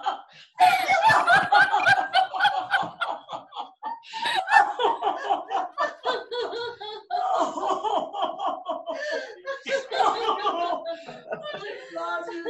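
Several women laughing together, the deliberate group laughter of a laughter-yoga exercise, heard through a video call.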